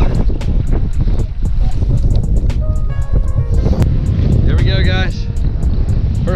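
Strong wind buffeting the microphone, a heavy, constant low rumble.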